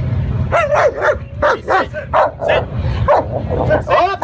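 Police K9 dog barking in a rapid string of short barks through the whole stretch.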